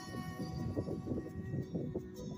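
Music playing through two Skullcandy Barrel XL Bluetooth speakers linked together in multi-link mode.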